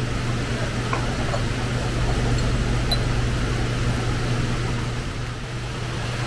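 Steady low mechanical hum under an even hiss, the background drone of a room fan-type machine running, with a couple of faint small ticks.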